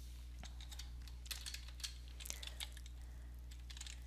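Typing on a computer keyboard: faint, irregular keystroke clicks coming in small bunches, over a steady low electrical hum.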